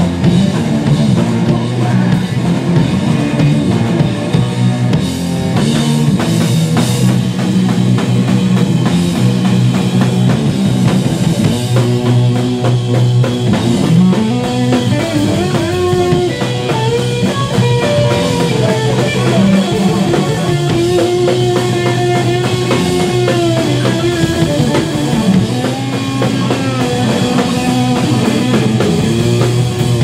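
Three-piece rock band of electric guitar, bass guitar and drum kit playing loudly live, with a melody that bends and slides in pitch through the second half.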